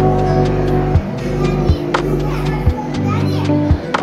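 Music playing, with held bass notes and a beat that changes about once a second, and people's voices over it.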